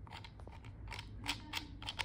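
Small plastic kids'-meal toy being handled and its hinged lid opened: a run of light plastic clicks and snaps.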